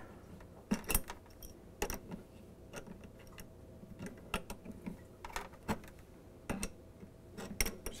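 Adjustable wrenches clicking on the water supply line's fitting nut as it is turned tight onto the ice maker's water inlet: light, irregular metal-on-metal clicks, a few seconds apart.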